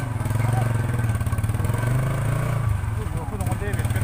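Motorcycle engine running at low speed while riding, its note rising slightly about two seconds in and then easing back.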